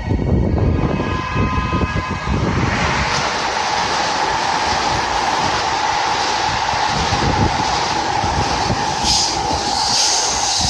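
A 12-car JR Kyushu 783 series electric express train passing through the station at speed: a steady rush of wheels and air that sets in about two and a half seconds in, as the cars run past the platform.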